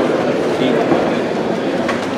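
Steady murmur of many people talking at once in a large hall, with room noise and no single voice standing out. A brief click sounds near the end.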